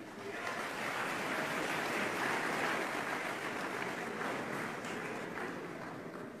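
Audience applauding, swelling over the first second and tapering off toward the end.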